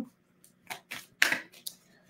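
Tarot cards being shuffled by hand: a series of short card clicks and a brief rustle about a second in.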